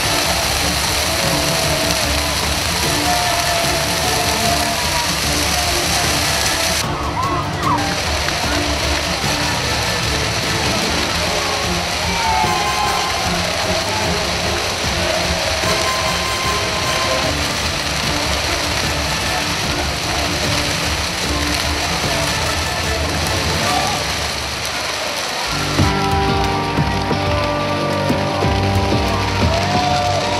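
A huge bonfire burning with dense, steady crackling, with shouts and voices from a crowd over it. About 25 seconds in, music with held notes comes in.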